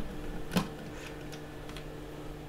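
A few faint ticks and clicks of a screwdriver turning a small screw out of a plastic torch handle, the sharpest click about half a second in.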